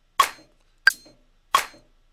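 Electronic drum samples from the Beat Thang Virtual plugin, played in a sparse loop: three short, bright percussive hits about two thirds of a second apart, each dying away quickly, with no kick drum under them.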